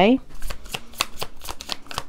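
A tarot deck being shuffled by hand: a quick run of light card slaps, several a second.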